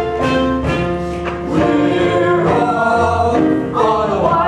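Stage musical number: a group of cast members singing together over instrumental accompaniment.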